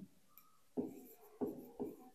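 Stylus writing on an interactive whiteboard screen: three short, faint strokes of the pen, the first coming just under a second in.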